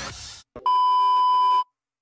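An electronic beep: one steady, loud tone held for about a second, which then cuts off sharply.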